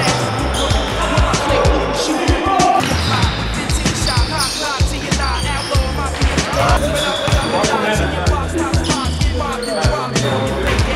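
A basketball bouncing on a wooden gym floor during play, the bounces coming at an uneven rate. A hip-hop track with a heavy bass beat plays over them.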